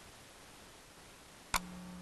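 A single sharp click about one and a half seconds in, followed by a steady low buzz that lasts a little over a second.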